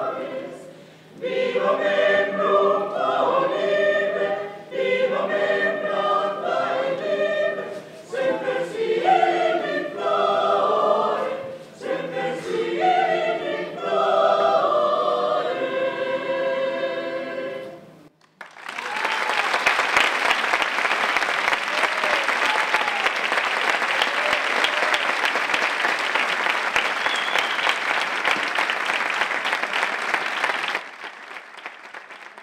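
A mixed choir of men's and women's voices singing, with the phrases breaking off briefly every few seconds. The singing ends about 18 seconds in, and after a brief pause the audience breaks into steady applause.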